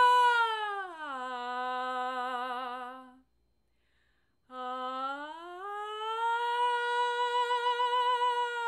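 A woman's solo voice singing a long unaccompanied 'ah', sliding down from a held high note to a lower one and wavering there. After a pause of about a second she slides slowly back up and holds the high note.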